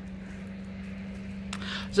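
A car going by on a nearby road: a steady rush of tyre and engine noise.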